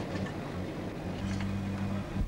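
Cargo truck's engine running as it drives off along a dirt track: a steady hum that grows stronger in the second half.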